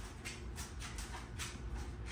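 Large mastiff-type dogs moving about at close range: soft, rhythmic sounds about three times a second over a low rumble.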